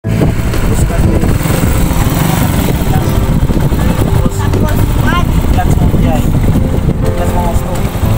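Motorcycle engine of a tricycle (motorcycle with sidecar) running steadily as it is driven, with people's voices over it.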